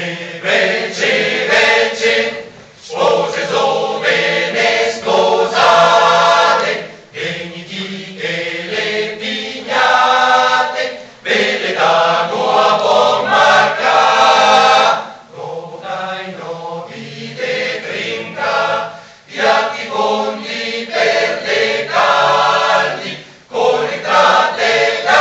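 Male choir singing a cappella in sustained phrases of about four seconds, each ending in a brief pause for breath.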